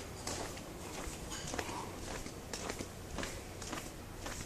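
Footsteps at a steady walking pace on a concrete alley surface, short scuffing steps roughly every half-second, over a low steady background hum.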